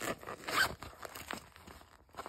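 Zipper of a small fabric pencil pouch being unzipped in several short scraping pulls, the loudest about half a second in.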